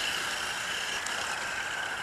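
Electric motor of a radio-controlled truck whining at a steady pitch under throttle.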